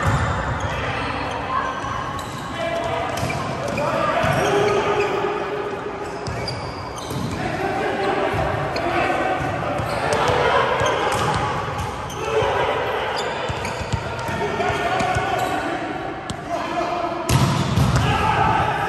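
Volleyball rally in a large, echoing gym: the ball is struck with sharp slaps, the loudest near the end, while players call out and talk across the court.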